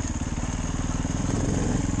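Dirt bike engine running at a steady, moderate speed while riding along a trail, heard close up from the rider's own bike.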